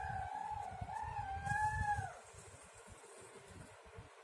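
A rooster crowing once: a single drawn-out call a little over two seconds long that wavers in pitch and drops off at the end.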